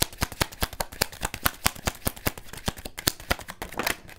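A deck of fortune-telling cards being shuffled by hand: a rapid run of crisp card flicks, about ten a second. Near the end a card jumps out of the deck onto the table.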